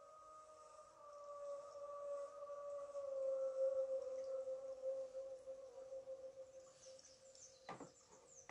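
A long held tone at one steady pitch, slightly wavering, that swells to its loudest around the middle and slowly fades away. A couple of short rustles or knocks come near the end.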